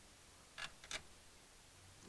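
Two short, faint clicks close together about half a second in, otherwise near silence.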